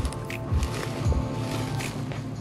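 Background music: sustained chords over low thumps about every half second.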